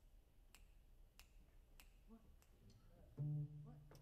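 Near silence with faint ticks about every half second. About three seconds in, a low double bass note sounds and rings on.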